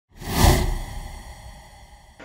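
Whoosh sound effect of a logo intro sting. It swells quickly to a peak about half a second in, with deep bass under it, then fades away over the next second and a half.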